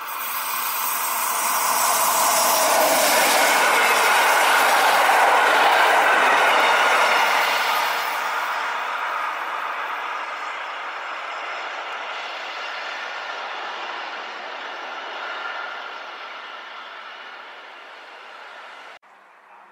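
A Rhaetian Railway metre-gauge train hauled by a Ge 4/4 I electric locomotive passing close by: the running noise of wheels on the rails swells over the first couple of seconds, is loudest from about four to seven seconds in, then fades slowly as the train runs away.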